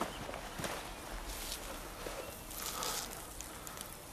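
Faint footsteps and rustling of dry vegetation, over quiet outdoor background noise.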